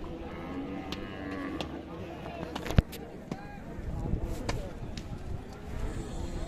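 Crowd chatter at a livestock market, with a water buffalo giving a short low call about half a second in. A single sharp click near the middle stands out above the din.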